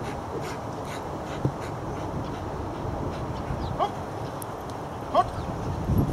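Belgian Malinois giving two short rising whines, about four and five seconds in, over steady outdoor background noise. A single short thump comes about a second and a half in.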